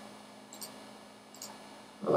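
Two faint, short computer mouse clicks, about half a second in and again near a second and a half in, over a low steady hum.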